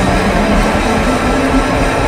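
Live rock band playing loud with electric guitars, bass and drum kit, a dense steady wall of sound with held low notes.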